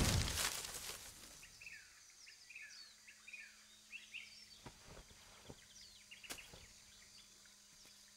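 A loud whoosh fades away over the first second. Then faint birds chirp in short, repeated downward-sliding notes, with a few soft clicks in the second half.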